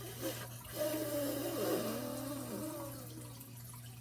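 A woman blowing out a long, slow breath through pursed lips, the calming exhale of a deep-breathing exercise. It starts about a second in and fades away after about two seconds.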